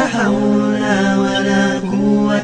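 A voice chanting Arabic dhikr in a long, drawn-out melodic line, with the pitch gently bending. There is a brief break near the end.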